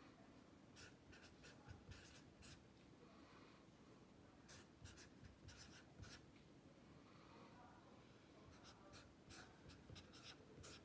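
Felt-tip pen writing on lined notebook paper: faint, scratchy short strokes, coming in small clusters as each number and bracket is drawn.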